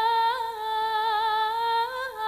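A Javanese sinden (female singer) holds one long, slightly wavering note through a microphone and PA, with no instruments behind her. Her pitch lifts briefly and the note breaks off for a moment near the end before she carries on.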